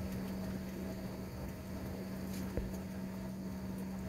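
Steady airliner cabin noise while taxiing after landing: a constant low hum with a fainter higher tone above it, and a single faint knock about two and a half seconds in.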